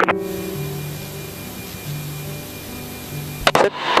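Steady radio hiss with soft background music of held low notes underneath; about three and a half seconds in, a sharp click cuts the hiss off.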